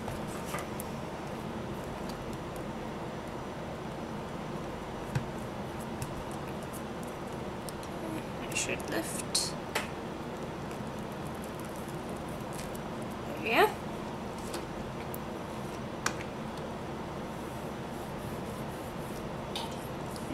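Steady whirring of a room air conditioner, with hands working soft polymer clay and peeling a thin plastic texture sheet off it: a brief crinkling of plastic about nine seconds in, and a short rising squeak, the loudest sound, about two-thirds of the way through.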